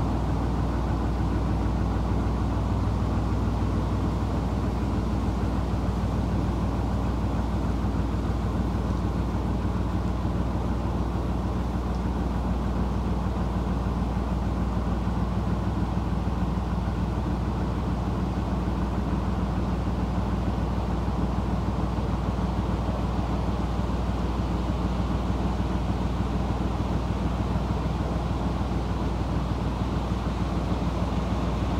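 Narrowboat's inboard diesel engine running steadily at cruising speed, a constant low hum.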